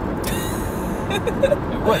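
Steady road and engine noise inside a moving car's cabin, with a brief hiss in the first second.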